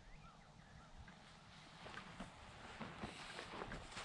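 Very quiet outdoor ambience with a few faint bird chirps in the first second, then soft footsteps on grass from about halfway through.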